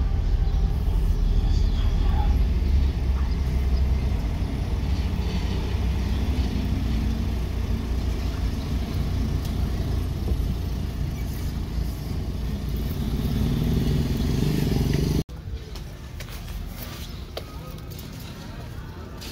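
Steady low rumble of a car's engine and road noise heard from inside the cabin while driving slowly. It cuts off abruptly near the end, giving way to quieter street sound with light footsteps on the pavement.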